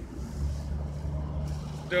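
Road traffic: a motor vehicle's engine on the road alongside, a steady low hum that sets in shortly after the start and holds.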